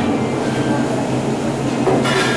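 Steady mechanical drone with a constant low hum.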